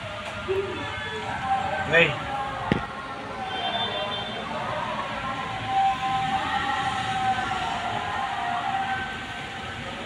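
Heavy rain falling steadily, an even hiss with no break. A faint drawn-out wavering tone sounds for a few seconds in the middle, and there is a sharp click just before three seconds.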